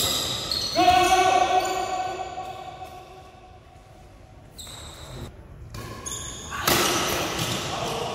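Badminton doubles play: a racket hits the shuttlecock at the start, then about a second in comes a drawn-out shout that fades as the rally ends. Near the end there is a loud noisy burst lasting about a second as play starts again.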